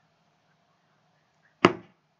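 Near quiet, broken once about one and a half seconds in by a single short, sharp knock.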